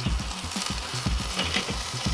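Chicken wings sizzling on the hot grate of a Weber charcoal kettle grill as they are turned with tongs: a steady frying hiss.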